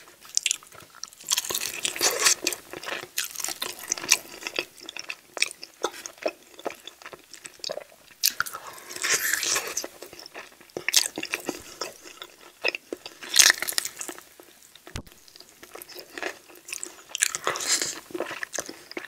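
Close-miked eating of sauced chicken wings: wet chewing and smacking in irregular clusters as meat is pulled off the bone. Near the end, sauce-covered fingers are sucked and licked.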